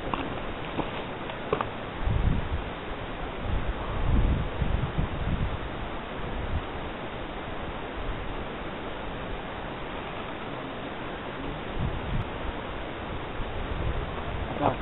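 Wind on an exposed mountain ridge blowing across the camera microphone: a steady hiss with low buffeting gusts about two seconds in, again around four to five seconds, and once more near the end.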